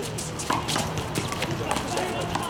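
Quick shuffling and scuffing of sneakers on an asphalt court as handball players move during a rally, with a sharp impact about half a second in.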